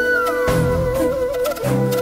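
Background music from a TV drama score: a long held melody note over a low, pulsing accompaniment, with a higher line sliding down in pitch in the first half second.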